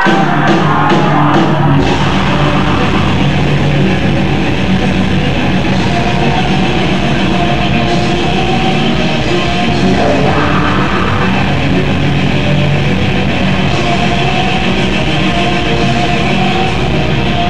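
Live black metal band playing a song: a few drum hits at the start, then fast, even drumming under loud guitars from about two seconds in.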